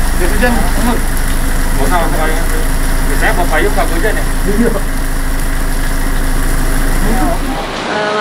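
A vehicle engine idling with a steady low hum under quiet chatter of several voices. The hum cuts off near the end.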